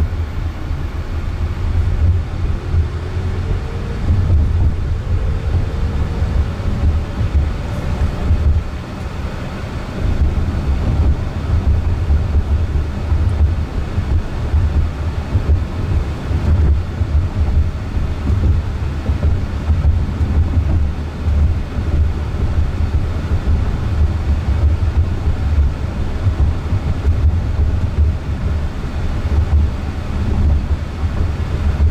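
Cabin noise inside a moving Jaguar I-Pace electric car: a steady low rumble of tyres and road. A faint whine rises in pitch over the first few seconds as the car pulls away.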